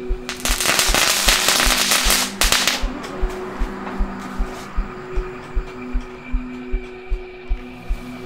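A string of firecrackers going off in a rapid, loud crackle of pops for about two and a half seconds, then stopping, over music with a low pulsing beat about three times a second.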